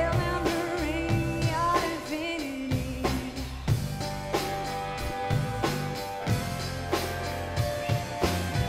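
Live pop-rock band performance: a woman singing over a steady drum-kit beat, with guitar and bass. The singing is clearest in the first couple of seconds, while the drum hits and held notes carry through the rest.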